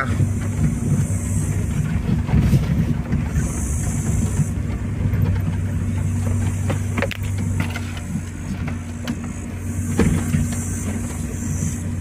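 A vehicle's engine running at low speed, heard from inside the cabin, with rattles and knocks as it rolls over a rough, stony dirt track. A high hiss comes and goes twice.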